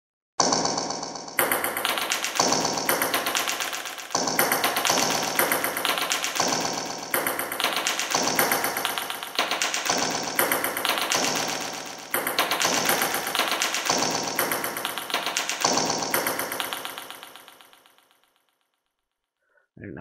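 An audio sample played back dry, with no delay effect: a rapid, rattling pattern of repeated hits that changes every three-quarters of a second or so. It fades out a couple of seconds before the end.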